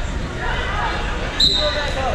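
Wrestling referee's whistle blown once, a short high blast about one and a half seconds in, over the chatter of a gym crowd.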